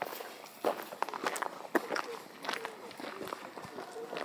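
Footsteps of a person walking, a series of uneven steps, with faint voices in the background.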